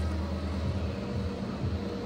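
Suzuki Swift petrol engine idling with a steady low hum, running again on its newly fitted crankshaft sensor.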